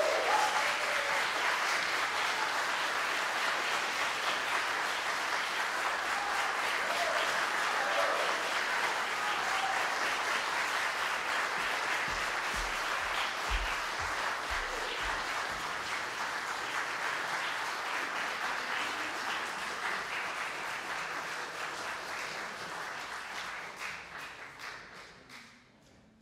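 Audience applauding steadily after a piano performance, dying away near the end.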